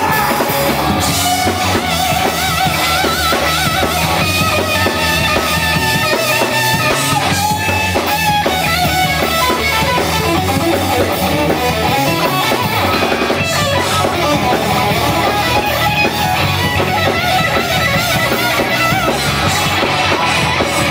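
Live rock band playing an instrumental passage: an electric guitar leads with wavering, bent notes over a drum kit, bass and rhythm guitar.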